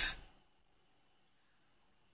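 The last syllable of a man's word, then near silence: room tone with a faint steady high whine.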